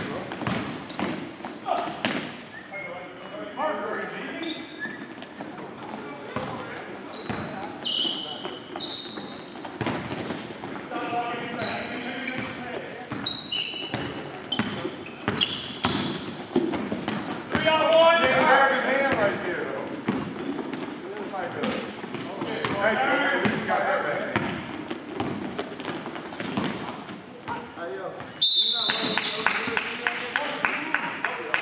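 Basketball game on a hardwood gym floor: a ball bouncing, sneakers squeaking in short high chirps, and players shouting indistinctly, with a high whistle near the end.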